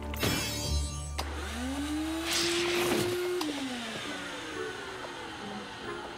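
A cartoon vacuum cleaner sound effect as a canister vacuum sucks slime off a pony. The motor whine rises in pitch, holds, then winds down about four seconds in, with a burst of rushing suction in the middle.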